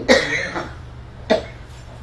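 Two short breathy bursts from a man at a microphone: one right at the start, lasting about half a second, and a sharper, briefer one a little over a second in.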